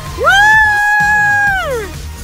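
A child's long high-pitched scream: it rises, holds steady for about a second, then slides down in pitch, over background music.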